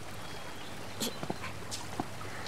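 A dog making a few short sounds about a second in, over a steady background.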